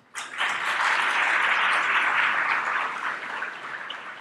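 Audience applauding: the clapping starts almost at once, holds for a couple of seconds, then dies down toward the end.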